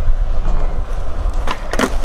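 Skateboard wheels rolling on concrete with a steady low rumble, then a couple of sharp clacks of the board striking near the end.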